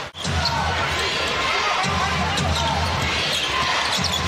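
Basketball game sound in an arena: the ball dribbling on the hardwood court, sneakers squeaking, and the crowd murmuring steadily.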